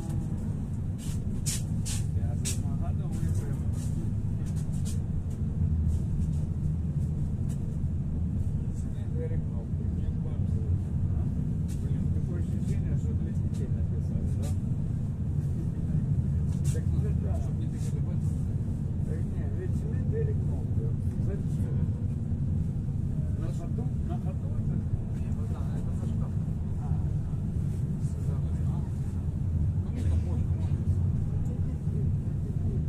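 Pesa Foxtrot tram running at speed, heard from inside the passenger cabin: a steady low rumble of the running gear on the rails, with scattered sharp clicks, most in the first few seconds.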